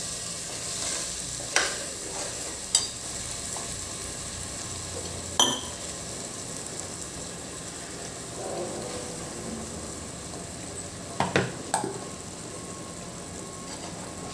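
Green peas and freshly added green chutney paste sizzling steadily in oil in a pot, with a steel spoon knocking and scraping against the grinder jar and pot a few times, two quick knocks close together near the end.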